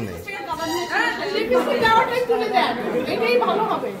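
Several women talking at once: overlapping conversational chatter in a room.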